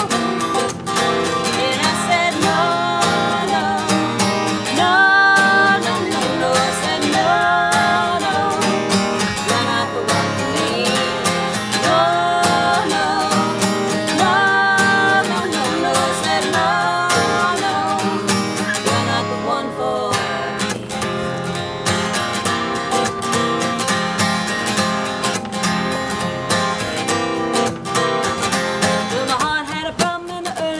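Two acoustic guitars strummed together while two women sing, with sung phrases that stand out most in the first half and thin out later.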